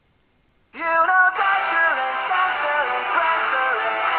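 Samsung tablet's alarm tone going off: a loud electronic melody of stepping notes starts suddenly just under a second in and keeps playing, waking the sleeper.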